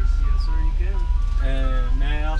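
Ice cream truck jingle: a simple electronic tune of steady notes stepping up and down in pitch, over the steady low rumble of the truck's running engine.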